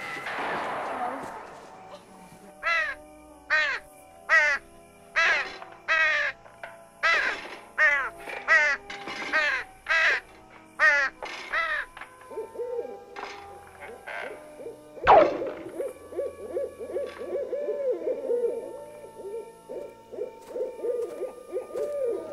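Night-time horror sound effect of an owl calling over and over, about once a second, for some ten seconds. Then comes a sudden sharp hit, followed by a low wavering tone.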